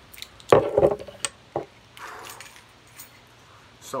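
A glass beer bottle's crown cap being pried off, a sudden pop about half a second in, followed by two light clicks of the cap and bottle.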